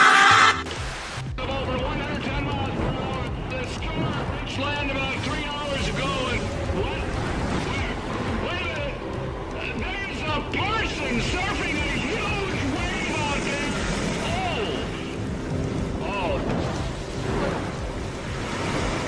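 Audio from a playing video clip: a loud, short scream that cuts off about half a second in, then a voice talking over background music.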